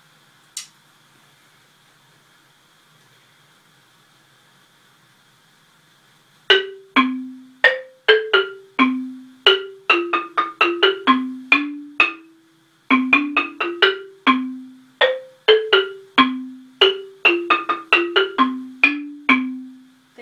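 Homemade wooden-bar marimba played with mallets: a simple melody of single struck notes, each ringing briefly and dying away. The playing starts about six seconds in, after a quiet stretch with one light click, and pauses briefly about halfway through.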